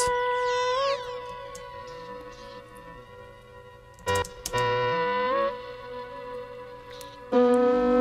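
A sustained synthesized vocal note processed by Ableton's Erosion effect in sine mode. Its frequency is dragged downward, so a faint whistling artifact falls in pitch during the first second. A brief louder phrase comes about four seconds in, and a lower note enters near the end.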